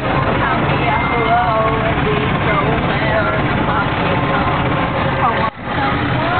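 Golf cart driving along, its motor and wheel noise running steadily under people's voices. The sound cuts out for a moment near the end.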